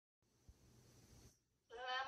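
Faint hiss with a soft thump, then near the end a high voice begins a long held note that rises in pitch as it starts.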